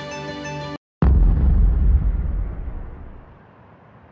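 Intro music stops abruptly; about a second in, a loud, deep boom sound effect hits and its low rumble fades away over about three seconds.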